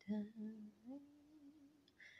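A woman humming quietly to herself: a low held note that slides up to a higher one, which is held and fades away.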